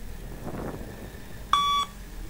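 Single electronic beep from a Luc Léger shuttle-run test recording, one steady tone lasting about a third of a second, about a second and a half in. It is the test's pacing signal for the runner to reach the line.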